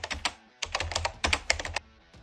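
Computer keyboard typing sound effect: a quick run of key clicks, about eight a second, with a short pause about half a second in, stopping near the end.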